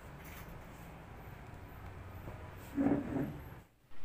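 Quiet background noise with one brief voiced sound, a short vocal utterance, about three seconds in; the sound drops out abruptly just before the end.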